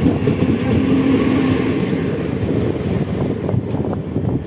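Trains passing on adjacent tracks, heard from the open doorway of a moving coach: loud, steady wheel-on-rail rumble and clatter as a Mumbai ICF EMU local runs alongside. A steady hum sits in the rumble for the first couple of seconds, and the noise eases slightly near the end as the EMU's rear cab draws away.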